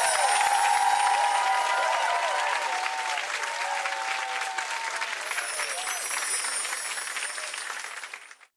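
Studio audience applauding, with a few voices cheering through the clapping, steadily fading out toward the end.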